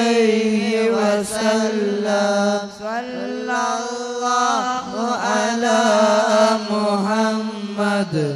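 Devotional chanting of Arabic salawat, a melodic vocal line rising and falling in phrases over a steady low held note, with a brief break about three seconds in.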